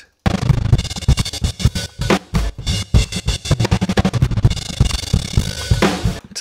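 A drum-kit loop played back through a hard, gate-like tremolo set to a fast rate, chopping the beat into rapid glitchy stutters. It starts a moment in.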